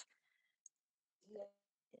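Near silence: the interpreted speech has dropped out because the speaker's audio connection cut off. A single faint click and a brief, faint snatch of voice are the only sounds.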